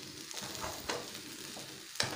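Fried rice sizzling in a wok while a spatula stirs it, with a few short scrapes of the spatula against the pan.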